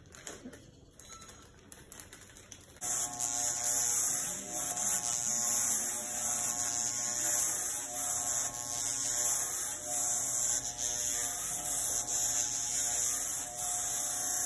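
Electric hair clippers with a guard comb switch on about three seconds in and run with a steady buzz as they are worked through a man's hair.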